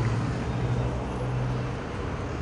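Outdoor street ambience: steady traffic noise with a low engine hum that fades near the end.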